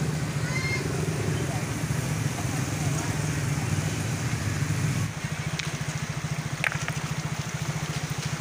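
Small motorcycle engines running on a wet, debris-strewn road, a steady low drone. About five seconds in it drops to a quieter, evenly pulsing putter.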